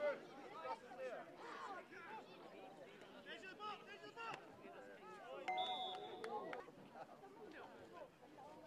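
Shinty players shouting and calling to one another across the pitch, several distant voices overlapping. Just past the middle a steady tone sounds for about a second.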